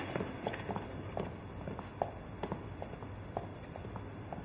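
Footsteps of two people walking across a hard floor: light, irregular clicks, about three a second.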